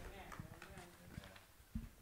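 Quiet room with a few faint footsteps knocking on the platform as a person walks away, and a faint murmur of voices near the start.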